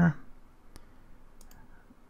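A few faint, sharp computer-mouse clicks.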